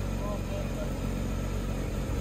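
Porsche 992 GT3's flat-six engine idling steadily as the car creeps down the loading ramps.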